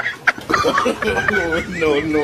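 A man's voice laughing in a high, wavering cackle, with a couple of brief knocks just after the start.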